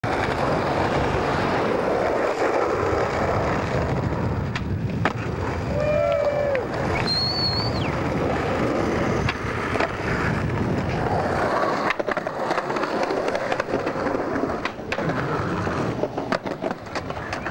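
Skateboard wheels rolling over rough street pavement, with sharp clacks of boards popping and landing. About six seconds in, onlookers whoop and shout.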